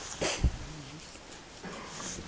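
A man's short breath noise close to the microphone, with a low thump, followed by a brief low wavering voiced sound about half a second long.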